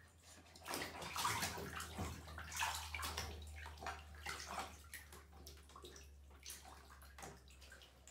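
Bathwater sloshing and splashing softly in small, irregular splashes as a toddler scoops and tips it with a plastic cup in the tub.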